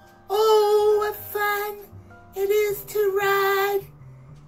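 A woman singing loud held notes in four phrases, with short breaths between them.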